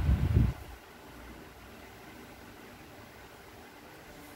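A short, low thump and rumble in the first half-second from a hand and plastic ruler knocking the paper on the desk, then only a faint steady hiss of room noise.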